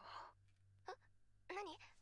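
Quiet dialogue from an anime voice track: a breathy sigh, then two short, hesitant vocal sounds.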